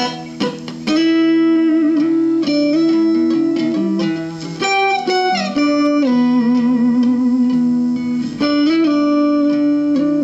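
Electric guitar on its neck pickup, played through a Roland combo amp, fitted with a thick pot-metal Wilkinson tremolo block. It plays a single-note lead line of held notes with vibrato and a few pitch bends, with a short gap about a second in.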